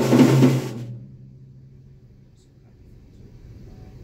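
A short burst of drum-kit hits with a cymbal crash right at the start, the cymbal fading within a second and a low drum ringing out over about two seconds, then only a faint low hum.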